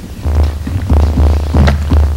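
A loud, steady low hum starts about a quarter of a second in and continues, with faint voices beneath it.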